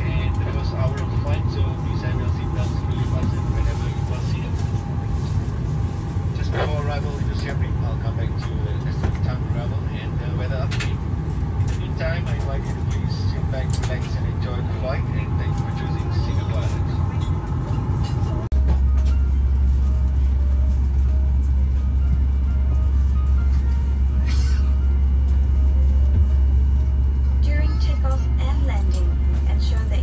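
Airliner cabin sound at the gate: a steady low rumble with passengers' voices and small clatters over it. About two-thirds through it switches abruptly to a louder, deeper steady drone.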